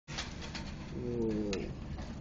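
A pigeon cooing once, a low call of under a second that bends down in pitch at its end, over a steady low rumble with a few faint clicks.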